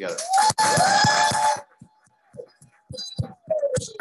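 Audience applauding with a couple of rising whoops, loud and brief; it cuts off suddenly about a second and a half in, leaving only scattered faint sounds.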